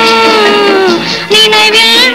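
Tamil film song: a female voice holds a long sung note with orchestral accompaniment. The note sinks in pitch about a second in and breaks off briefly, then a new phrase begins.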